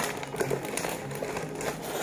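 Small plastic Lego pieces being handled and fitted together, a quiet patter of light clicks with some rustling of the plastic parts bag.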